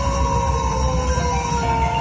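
Wolf Run Gold video slot machine playing its win sound effect as a big win counts up: one long tone that glides slowly downward over a steady low background of machine music.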